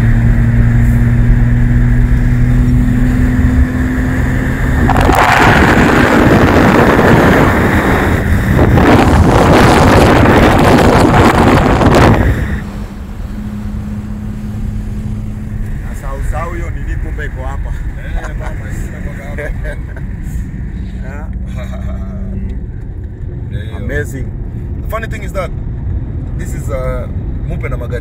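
Moving car heard from inside the cabin of a BMW 3 Series: a steady low engine drone, then a loud rush of wind and road noise from about five seconds in that cuts off suddenly about seven seconds later, leaving a quieter engine and tyre drone.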